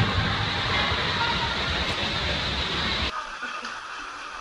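Steady rush of running water at a drop-capsule waterslide, which cuts off abruptly about three seconds in, giving way to a much quieter scene with faint voices.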